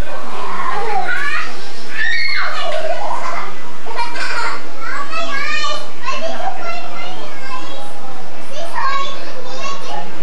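Several children's voices at once, talking and calling out over one another, high-pitched and busy.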